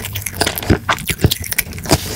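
Close-miked chewing of a mouthful of Orion Choco Pie, chocolate-coated cake with marshmallow filling, with a few sharp mouth clicks about half a second apart.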